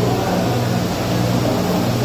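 A steady low mechanical hum, like a motor or fan running, under an even wash of background noise.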